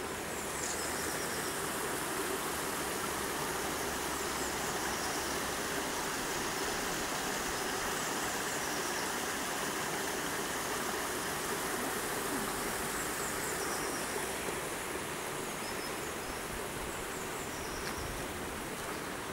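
Steady outdoor ambience: an even rushing noise with a few faint, short, high chirps now and then.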